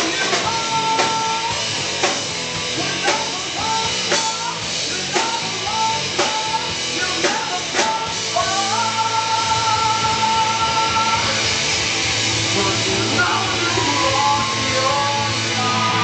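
A rock band playing loud live: guitars, drums and a singer, picked up by the camera's microphone in the crowd. Hard regular hits drive the first half, then a long held note comes in and the sound thickens into a steadier wash near the end.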